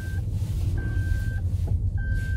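Toyota Estima's in-cabin reverse-gear warning beeper: a single high beep repeating evenly about once a second, with the car in reverse. Under it runs a steady low rumble from the hybrid's petrol engine running.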